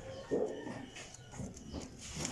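A short animal call about a third of a second in, with fainter sounds after it.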